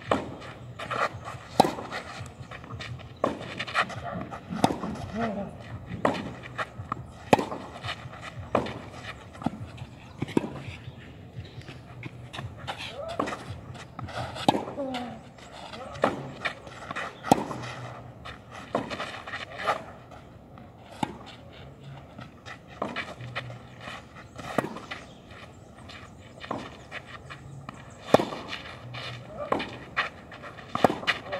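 Tennis rally on a clay court: the ball struck by rackets and bouncing, a sharp pop about every second.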